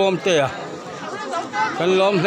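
People talking: one voice close by at the start, then several voices chattering at once.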